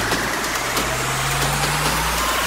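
Psytrance breakdown with the kick drum dropped out: a sustained buzzing synth drone over a low bass note that steps up in pitch a little under halfway through, building tension before the beat returns.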